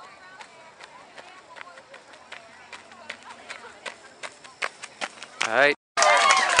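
A runner's footfalls on a gravel path, about two to three steps a second, with faint spectators' voices behind. Near the end a loud shout comes in, then the sound cuts off for a moment.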